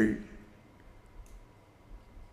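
A man's voice trailing off at the end of a phrase, then a pause of faint room tone with one small click a little past the middle.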